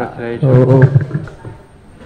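A man's voice in Buddhist chanting, holding long, level notes, loud at first and dropping away a little over a second in to a faint murmur.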